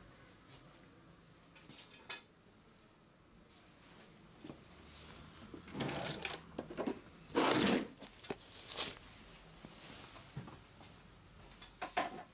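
A drawer or cabinet opened and rummaged through, with clattering and a rustle of fabric as a barber cape is pulled out. The loudest rustle comes about halfway through, and light clicks are heard before and near the end.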